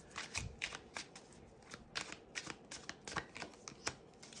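Tarot cards being shuffled by hand, a faint irregular run of soft card clicks and slaps, a few a second. Near the end a card is drawn and laid on the wooden desk.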